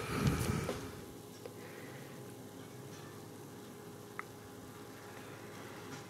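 Phone camera handling noise for under a second at the start, then a faint steady hum with one small click about four seconds in.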